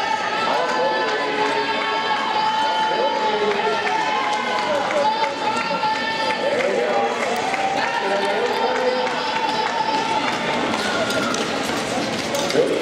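Many spectators' voices calling out and cheering over one another, high-pitched and continuous, as skaters race.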